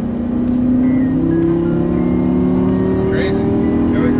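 Lamborghini Gallardo's V10 engine under hard acceleration, heard from inside the cabin, its pitch climbing slowly as speed builds.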